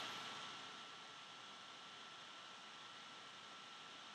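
Near silence: a steady low hiss of room tone, with a faint steady high tone beneath it.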